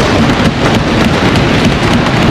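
A loud, steady wash of rumbling noise with no speech, an effect added in the edit.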